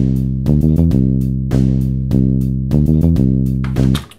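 Sequenced drum beat with rapid hi-hats and a bass line played back from a DAW's MIDI tracks, in odd meter, 19/16 changing to 15/16. Long held bass notes alternate with quick runs of short notes twice. The playback cuts off at the very end.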